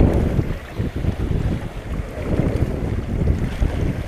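Wind blowing across the microphone, an uneven low rumble that rises and falls in gusts.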